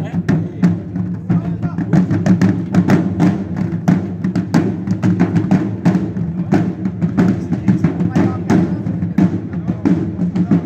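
A group of marching drummers playing tall field drums with sticks, many sharp strokes in a continuous rhythm over the drums' low ringing.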